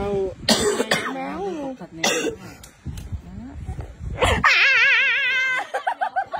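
A person's voice in sharp, cough-like bursts of laughter, then a high, wavering drawn-out cry a little past four seconds in.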